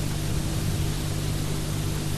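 Steady hiss with a low electrical hum under it: the recording's own background noise, with no other sound.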